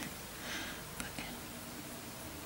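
A woman's soft, breathy, half-whispered "yeah" over a low room hum, with one faint click about a second in.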